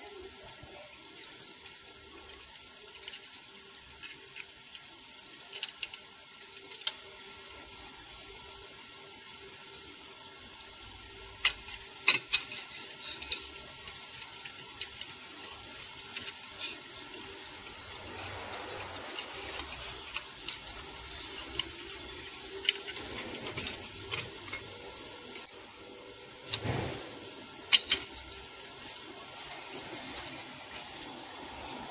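Thin stainless steel plate pieces clicking and tapping against each other and the metal chuck as they are handled, a dozen or so sharp clicks scattered over a steady hiss, with a duller knock near the end.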